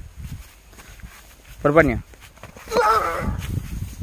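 Men's wordless shouts in a staged fist fight: a short, wavering yell about two seconds in, then a longer, louder cry about a second later, over a low rumble on the microphone.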